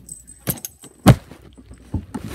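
A tablet falling off a music stand and clattering: a few sharp knocks, the loudest about a second in.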